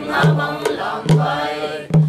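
A mixed group of men and women singing together in unison, with a hand drum struck on a steady beat about once a second.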